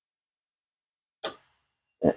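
Dead silence, then a single short knock a little over a second in that fades quickly.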